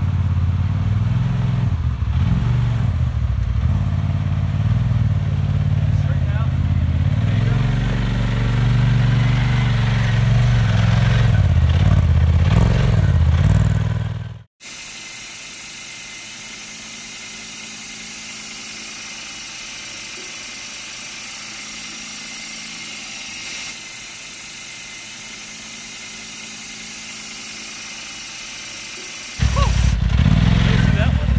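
Polaris RZR XP Turbo side-by-side engine running under load as it crawls over a rock ledge, its pitch rising and falling with the throttle. About halfway through it cuts off abruptly to a quieter steady hiss with a faint hum. The loud engine sound comes back near the end.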